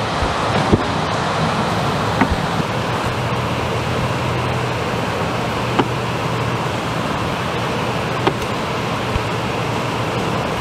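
Steady hiss of heavy rain, with a few light clacks as shellac 78 rpm records are tipped against one another in a plastic crate.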